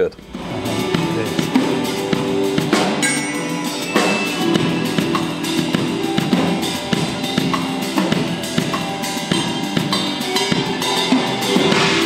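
A DW drum kit with Zildjian cymbals played live in a fast, dense drum solo. Rapid tom, snare and bass-drum strokes run under ringing cymbals without a break.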